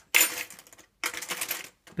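Off-camera handling of a plastic salt packet and a metal spoon: rustling and clinking in two short bursts, the first starting sharply and fading quickly.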